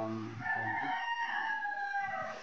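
A rooster crowing once: one long call starting about half a second in, dropping in pitch at the end.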